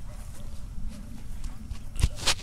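Handling noise from a clip-on lavalier microphone as it is moved and fitted: faint scattered clicks and rustles over a low rumble.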